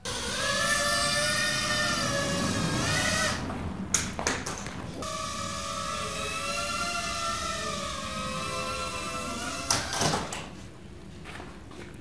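Tiny indoor quadcopter's electric motors and propellers whining in flight, the pitch drifting a little with the throttle. The whine stops briefly about three seconds in, with a few light clicks, starts again, and cuts out just before a sharp knock near the end.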